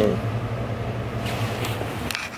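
A steady low hum that cuts off abruptly at the end, with a brief soft rustle about halfway through.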